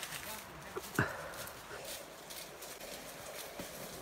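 Footsteps crunching through dry leaf litter and twigs, an irregular run of short crackling clicks, with one sharper sound about a second in.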